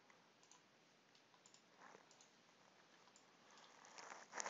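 Near silence with several faint, scattered computer mouse clicks.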